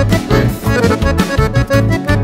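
Instrumental break in a Paraguayan folk song: an accordion leads the melody over a steady, pulsing bass beat.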